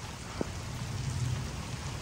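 Steady rain falling on pavement and grass, with one brief light tap about half a second in.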